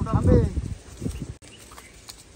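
A short high voice at the very start, then a few faint rustles and light clicks of leaves and twigs as a hand picks karvanda berries from a bush, then near quiet.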